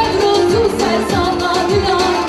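Live Kurdish dance song: a woman singing a wavering, ornamented melody into a microphone over electronic keyboard accompaniment with a steady drum beat.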